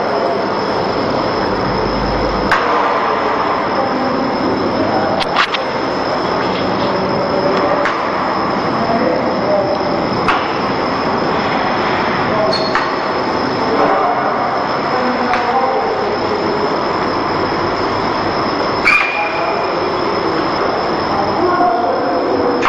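Automatic laminating machine running: a steady mechanical noise with a thin high whine held throughout and an occasional sharp click.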